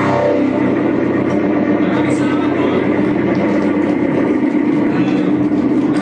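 Live band's distorted electric guitar and bass holding a steady, droning noise with no drum beat.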